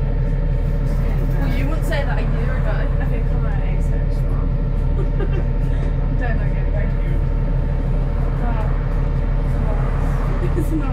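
A VDL SB200 single-decker bus driving along, heard from inside the passenger saloon: a steady, even engine drone with a constant hum over it. Voices talk over it at intervals.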